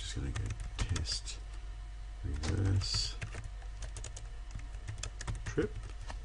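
Typing on a computer keyboard: a run of irregular keystrokes.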